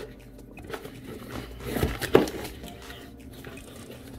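A small cardboard box being opened by gloved hands: cardboard flaps and paper packing rubbing and rustling, with a couple of sharp clicks about halfway through.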